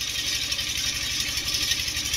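A steady low engine hum with an even, fast pulse, under a constant high hiss.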